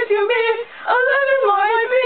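Young female voice singing in sustained, wavering notes, with a short break a little past halfway through the first second.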